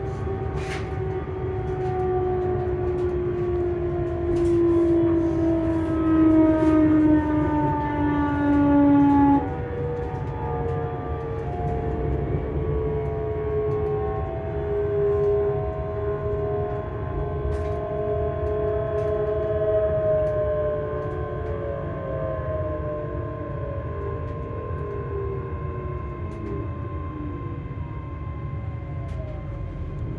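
Hitachi Class 385 electric train's traction motors whining, heard from inside the carriage: several tones fall steadily in pitch, jump up in a step about nine and a half seconds in, then fall again, over the low rumble of the running gear. The falling whine is the train slowing for a station stop.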